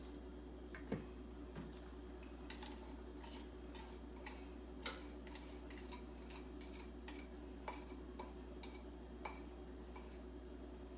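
A wire whisk and a spatula tapping and scraping against the rim and sides of a glass mixing bowl as melted chocolate mixture is scraped out: irregular light clicks, the sharpest about a second in and again near the middle.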